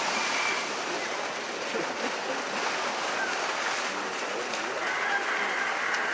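Water from a spout gushing steadily into an elephant's bathing pool, a continuous splashing rush.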